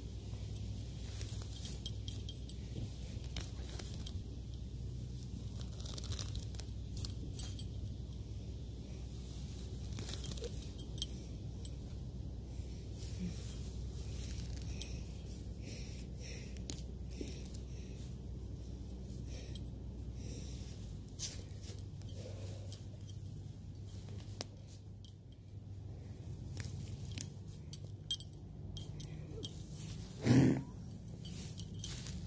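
Weeds and grass being pulled up by hand close by: scattered rustling, tearing and crackling. Beneath it runs a low steady hum that stops about two-thirds of the way through.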